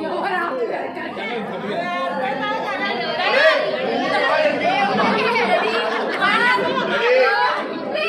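A group of people chattering at once, many voices overlapping, with no one voice standing out.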